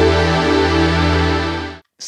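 VPS Avenger software synthesizer playing a preset: a dense sustained chord over a steady deep bass note, cutting off abruptly near the end.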